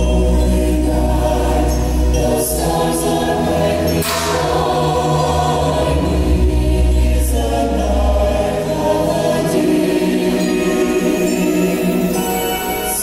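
A choir singing over musical accompaniment, with a deep held bass note underneath that stops about eight and a half seconds in.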